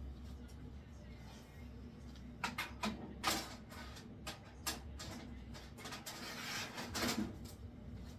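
A loaded tray sliding into a food dehydrator's rack and the unit being handled: a run of light clicks, knocks and a short scrape over a low steady hum.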